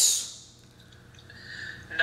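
A pause in a man's speech: the hissy end of a word fades out, leaving quiet room tone with a faint low hum, and a faint breath just before he speaks again.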